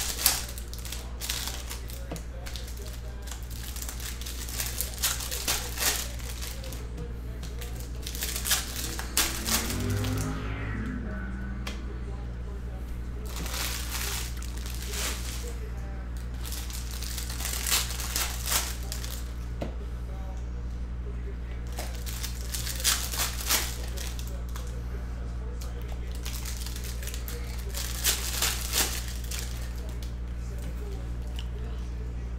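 Plastic card-pack wrappers crinkling and tearing in short bursts every few seconds as packs are opened by hand, over a steady low hum.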